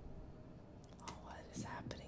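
Mostly quiet, with a faint, breathy voice about a second in.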